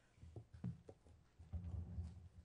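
A few faint, short low thumps in the first second, then a brief low rumble near the end.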